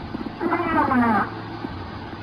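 Crackly old radio recording of a woman's voice, claimed to be a female Soviet cosmonaut calling out in distress. It holds one strained, distorted utterance about half a second in, falling in pitch at its end, over clicking static and a low hum.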